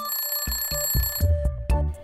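Alarm-clock ringing sound effect signalling that the countdown timer has run out. It rings for just over a second, over a cartoon music track with a steady beat.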